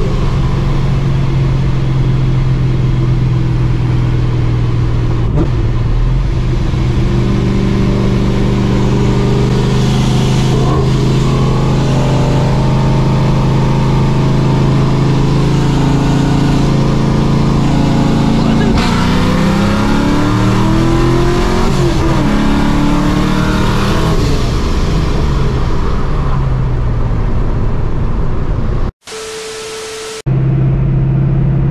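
Supercharged 5.4-litre V8 of a 1999 Mustang GT, heard from inside the cabin. It holds steady revs at first, then pulls hard with revs rising and a gear change about two-thirds of the way through, before easing off as the revs fall. Near the end the engine sound cuts out and a steady static buzz takes its place briefly.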